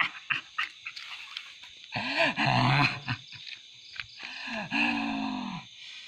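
A person's voice making long wordless vocal sounds: two drawn-out cries, one about two seconds in and one about four seconds in that dips in pitch and then holds steady, with a few short clicks in between.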